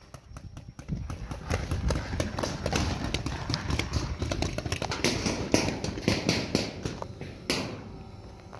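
Fast footsteps of a person running across grass, about three to four knocks a second with low jostling rumble, starting about a second in and easing off after a louder knock near the end.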